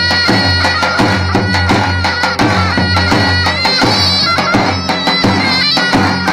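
Kurdish dahol and zurna playing folk dance music: the large double-headed drum beaten in a steady rhythm under the zurna shawm's sustained, ornamented melody.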